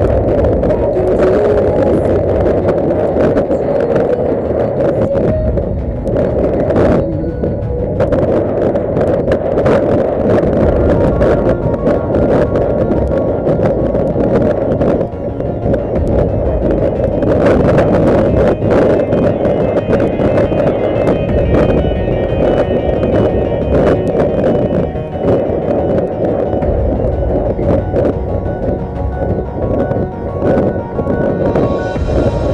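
Music playing over a dense, steady noise, with frequent short knocks throughout; from about eighteen seconds in, higher sustained notes come through more clearly.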